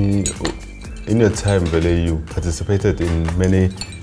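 Metal medals clinking against each other as they are handled on the wall, under louder background music.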